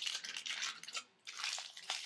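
Aluminum foil crinkling as it is wrapped and pressed around a fingertip, in two spells with a short pause just after a second in.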